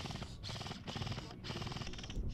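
Airsoft rifles firing on full auto: a fast, even rattle of shots, broken by a few short pauses.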